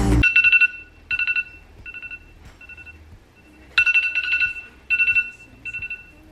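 Background music cuts off just after the start, and a phone timer alarm goes off: short bursts of a two-note electronic tone repeat about once or twice a second, now louder, now fainter, signalling that the timer has run out.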